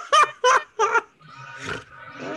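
A person laughing in four quick, high-pitched bursts in the first second, followed by a softer hiss-like noise.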